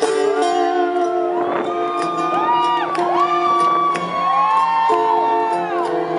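Live band playing an instrumental passage of a slow soul song: chords held underneath with notes that bend and slide up and down over the top.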